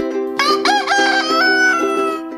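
Rooster crowing once: one long call that begins about half a second in, rising in steps and then held. Plucked ukulele music plays underneath.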